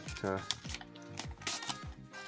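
Background music under a few short crisp paper rustles as a card is slid out of a paper envelope.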